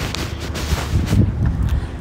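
Wind buffeting the phone's microphone outdoors: a loud, irregular low rumble that rises and falls in gusts.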